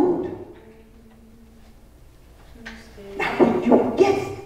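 A woman's voice through a headset microphone in short, loud utterances: one fading about half a second in, then a lull of about two seconds with a faint steady hum, then more from about three seconds in.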